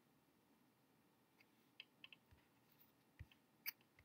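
Near silence with about six faint, short clicks in the second half: clicks from someone working a computer while browsing.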